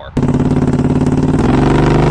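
Predator small-engine longtail mud motor running at high throttle, pushing a jon boat: a loud, steady engine note that starts suddenly, then changes abruptly about a second and a half in to a steadier, heavier note from the 22 hp Predator 670 V-twin.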